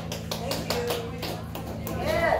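The last low notes of a live keyboard-and-electric-bass number linger and fade, with a few scattered sharp taps over them.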